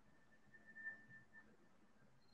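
Near silence: faint room tone over a video call, with a faint thin steady tone lasting about a second in the middle.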